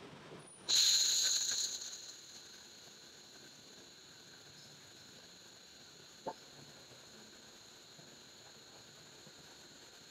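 A short burst of gas hissing from the nozzle of a Jasic LS-15000F handheld laser gun starts suddenly about a second in and fades away over a second or so. After that there is only a faint steady background with one small click.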